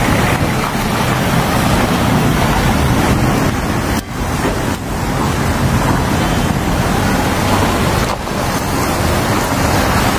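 Loud, steady rushing street noise around vehicles, with wind on the microphone. It dips briefly twice, about four and eight seconds in.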